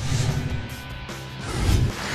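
Short music sting for a broadcast transition, with a whoosh and a deep hit that is loudest near the end.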